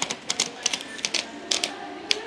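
A sheet of paper being torn out of a spiral-bound notebook: a rapid string of short, crisp rips as the page pulls free along the wire binding.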